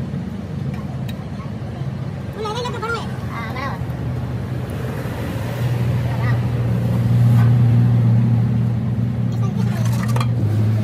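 An engine running steadily with a low hum, growing louder about halfway through.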